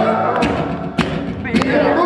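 Live solo acoustic set: a man singing with his acoustic guitar, the music punctuated by three sharp percussive strikes about half a second apart.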